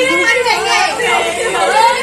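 Speech only: several voices chattering over one another.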